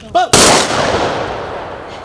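Honour-guard volley: a squad of soldiers fires their rifles together into the air. One loud crack about a third of a second in, followed by an echo that fades over about a second.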